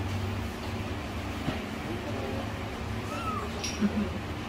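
A month-old kitten mewing while held for an oral deworming dose by syringe, with one clear short, high, arching mew a little after three seconds in and fainter mews before it.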